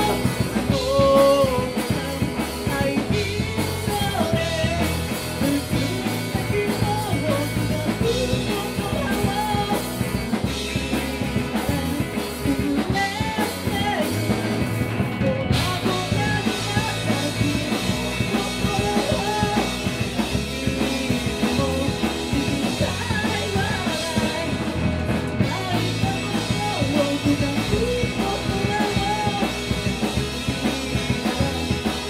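A live rock band playing: drum kit, electric bass and a hollow-body electric guitar under a sung lead vocal. The sound gets fuller and brighter in the high end about halfway through.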